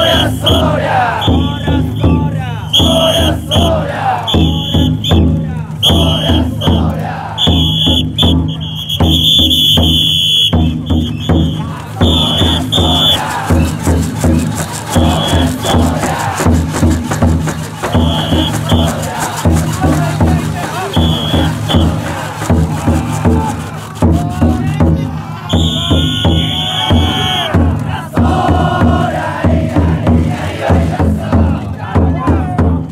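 A Niihama taikodai drum float being shouldered: its big drum beats steadily under the massed shouting and chanting of the bearers, while shrill whistle blasts from the conductors on the carrying poles come again and again, a long one about ten seconds in and another near the end.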